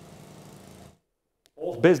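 Faint, steady outdoor background noise with a low hum. It cuts off to dead silence about a second in, and a man's voice starts near the end.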